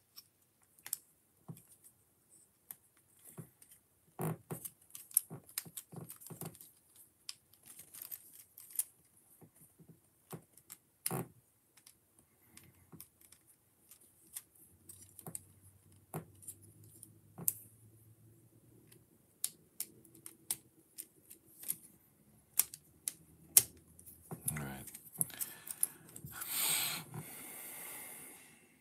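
Plastic Technic-style building pieces from a Mov Stone Technique kit clicking and knocking as they are handled and fitted together, in scattered sharp clicks, with a longer rustle near the end.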